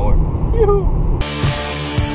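Steady road and engine noise inside a car cabin at motorway speed. About a second in, it cuts suddenly to rock music with guitar and drums.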